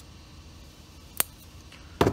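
A single sharp click about a second in, as a metal retaining clip is pressed onto the edge of a dash-delete panel, over a low steady hum.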